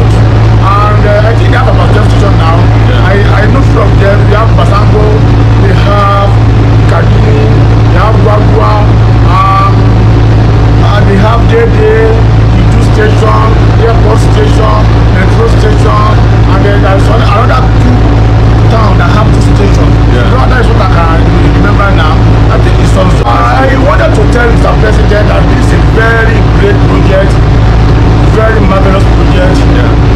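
A man talking over a loud, steady low hum inside a light-rail train carriage.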